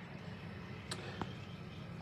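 A thin stream of tap water running quietly into a bowl of salt cod pieces, with two small clicks about a second in.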